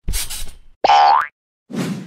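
Cartoon sound effects for an animated logo: a short noisy swish, then a quick rising springy "boing" glide about a second in, then a softer dull thud near the end.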